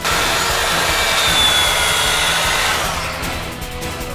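A loud, steady rush of noise, like blowing air, that starts suddenly and fades away over the last second, with music under it.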